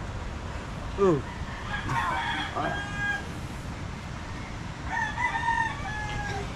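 A rooster crowing: a long held crow about two seconds in, and another near the end.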